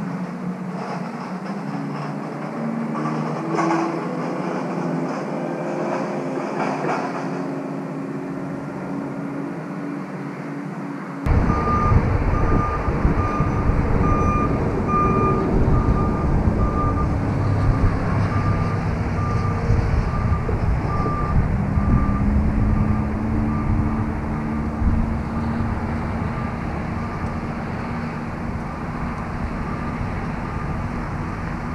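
A vehicle's reversing beeper sounds in an even series of short, high beeps, about two a second, over a running engine. About eleven seconds in, a loud low rumble sets in suddenly under the beeping.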